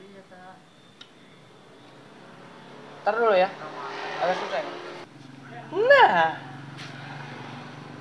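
A few short, high-pitched vocal calls, the loudest about three and six seconds in, the second rising and then falling in pitch. A low steady hum joins about five seconds in.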